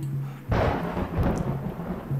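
A sudden loud rumble begins about half a second in and slowly fades, over low, steady background music notes.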